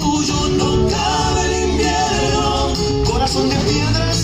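Argentine folk music with singing, loud and steady.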